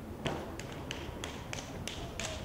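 Irregular sharp claps and taps, a few each second, typical of the hand claps and foot stomps of stepping.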